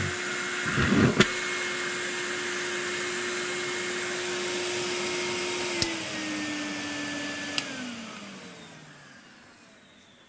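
Numatic Henry vacuum cleaner motor running with a steady whine, working again on a new control board, with a brief burst of noise and a click about a second in. Near six seconds a switch click drops the motor to a lower speed. A second click switches it off and the motor winds down, its whine falling over about two seconds.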